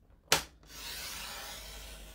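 Rail-style paper trimmer: the blade head clicks down once, then slides along its rail across cardstock with a steady rubbing, scraping sound.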